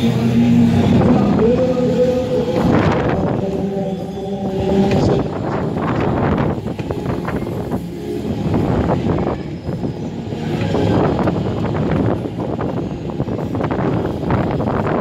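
Flipper fairground ride in motion heard from an onboard seat: rushing, buffeting air and ride rumble. Fairground music plays under it for the first few seconds.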